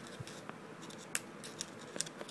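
A kitten's paws and claws scratching and snagging on a fuzzy blanket: faint light scratches and clicks, with a sharper click about a second in and another near the end.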